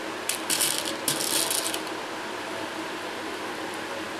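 Small plastic pearl beads rattling and clicking as a hand picks them up, in three short bursts during the first two seconds, over a steady low hum.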